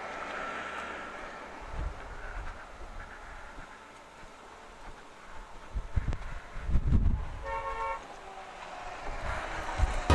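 A vehicle horn sounds once, a single steady tone lasting about half a second, a little past the middle, over faint outdoor background with a few low rumbles.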